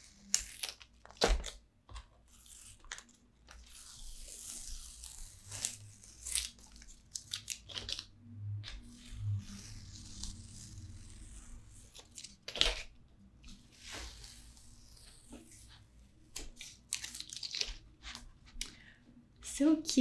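Masking tape being peeled off paper in several slow pulls, each a long, hissy rip, with a couple of sharp clicks in between.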